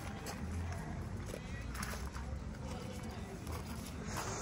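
Faint background of distant voices, with a few light knocks.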